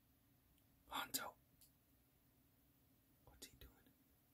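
Near silence, broken by a short whispered sound about a second in and a fainter one a little after three seconds.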